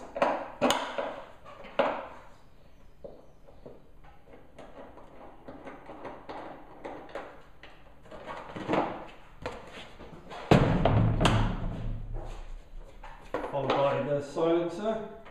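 Scattered clicks and knocks of a hand tool and plastic bodywork as the seat and rear side panel of a Husqvarna TC 85 motocross bike are unbolted, with one louder, longer thud and rumble about ten seconds in.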